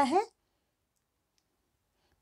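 A woman's voice finishing a word, then dead silence.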